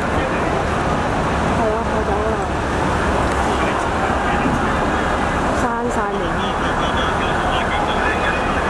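Street ambience: several people talking at once, unintelligibly, over steady road traffic noise. The voices dip briefly just before the six-second mark.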